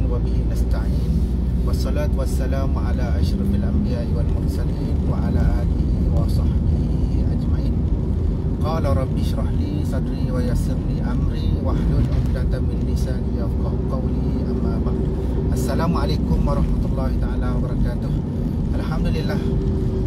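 Steady low rumble of a car, engine and road noise heard inside the cabin, under a man talking.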